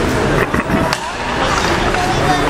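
Ice hockey play in an arena: skate blades scraping the ice and two sharp clacks from sticks and puck, about half a second apart near the middle, under spectator chatter.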